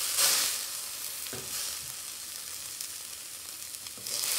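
Burger patties sizzling on a grill over open flames. The sizzle is loudest just after the start and eases off, with a brief surge about a second in.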